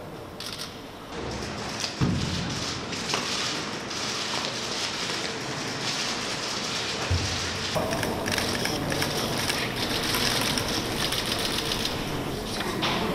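Many camera shutters clicking rapidly and overlapping in a dense patter, becoming denser about two-thirds of the way through.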